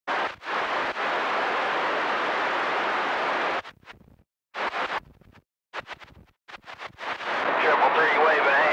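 CB radio receiver on channel 28 letting through a steady rush of static for the first three and a half seconds. The squelch then chops it into short bursts with dead silence between. Near the end the static swells up again as the squelch reopens.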